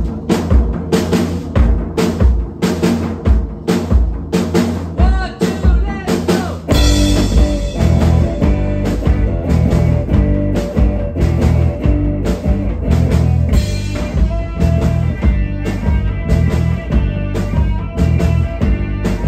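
Live rock band playing: electric guitar, electric bass and drum kit. It opens with spaced, punched hits from the drums and bass, and the full band comes in about seven seconds in.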